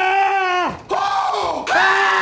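A man crying out in long, high-pitched yells, three in a row with short breaks between, each one dropping away at its end, as if straining while hanging on.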